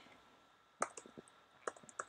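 A few faint, scattered computer-keyboard keystrokes, starting about a second in and bunching together near the end.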